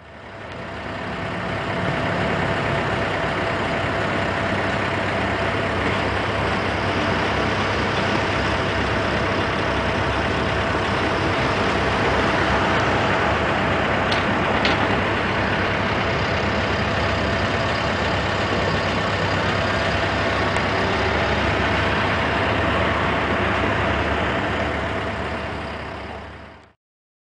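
Steady outdoor street noise with a large engine idling under a constant hum, and two brief clicks a little past the middle.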